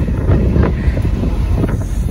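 Wind buffeting a phone's microphone outdoors: a steady low rumble.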